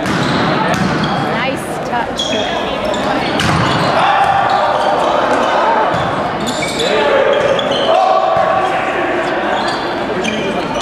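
Volleyball rally in a gym: the ball being struck and slapping the floor several times, among players' calls and spectators' chatter, all echoing in the hall.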